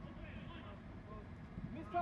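Faint shouts of players calling to each other across the pitch, growing louder near the end, over a low steady rumble.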